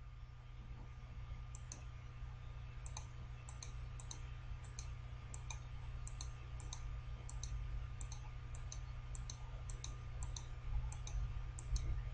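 Computer mouse button clicking, many clicks in close pairs, about two dozen over some ten seconds as words are picked up and dropped, over a steady low electrical hum.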